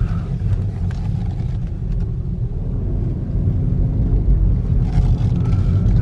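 Mk4 Ford Focus 1.5-litre diesel engine running at low revs as the car is driven slowly and turned, heard from inside the cabin as a steady low drone.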